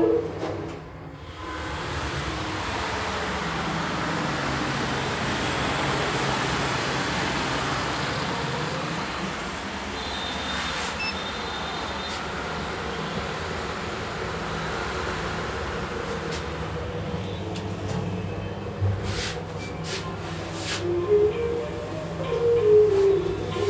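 Passenger elevator car travelling in its shaft: a steady rumble and hum that builds over the first few seconds and then slowly eases, with a few clicks near the end.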